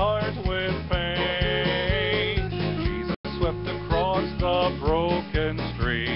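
Gospel quartet singing in mixed voices over a country-style accompaniment of bass and guitar with a steady beat. One voice holds a long note with vibrato about a second in, and the sound cuts out for an instant about three seconds in.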